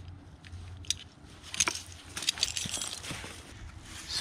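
Metal climbing hardware clinking and rope rustling as a hitch cord is worked around a climbing line, with a few sharp clinks from about a second and a half in.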